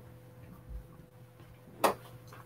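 Quiet office room tone with a faint steady electrical hum and a soft low thump about three quarters of a second in, ending in one short sharp sound.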